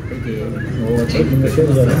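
People talking in low voices, with a few faint clicks.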